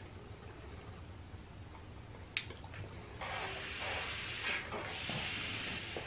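A sharp click, then about three seconds of noisy, liquid-like sound as a small energy shot is drunk from its bottle.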